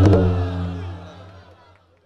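Live qawwali music ending on a held low chord after the drumming stops, fading out to silence over about two seconds.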